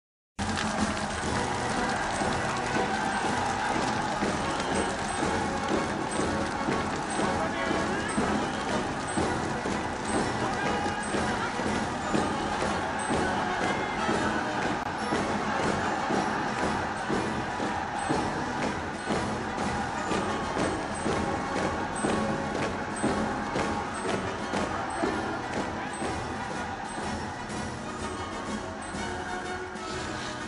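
Film soundtrack: music mixed with the noise of a large crowd, starting suddenly just after the start and running dense and steady, easing off a little near the end.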